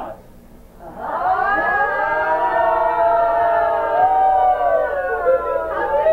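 Several voices holding one long, drawn-out wail together, starting about a second in. The pitches waver and slide slowly.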